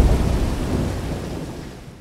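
Deep rumbling boom dying away, fading steadily toward quiet.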